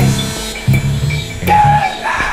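Live jazz-fusion band playing, led by an electric bass picking short, repeated low notes, with a higher held note sounding briefly about one and a half seconds in.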